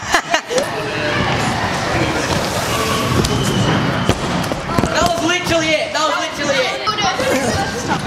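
Scooter wheels rolling across a skatepark ramp as a rider drops in to attempt a flair, with a sharp clatter about four seconds in, then voices in a large echoing hall.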